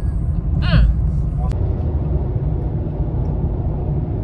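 Steady low road and engine rumble inside a moving car's cabin. A brief voice comes in about half a second in, and a single sharp click sounds about a second and a half in.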